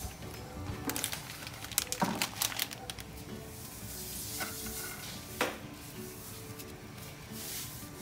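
Soft background music, with a faint hiss from a pot of salted, oiled water heating toward the boil. A few sharp clicks and knocks of kitchenware sound over it, a cluster about one to three seconds in and two more later.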